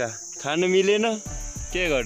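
Steady high-pitched drone of insects, with a man's voice over it twice and a low rumble in the second half.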